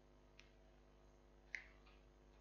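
Near silence: faint room tone with a steady low hum, a faint tick about half a second in and one sharp click about one and a half seconds in.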